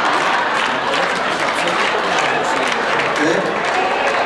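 Audience applauding steadily, a dense wash of clapping with crowd voices mixed in, in response to a joke's punchline.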